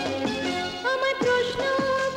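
Bengali film song: a female voice takes up a long held note about a second in, over busy instrumental backing with repeated falling-pitch drum hits.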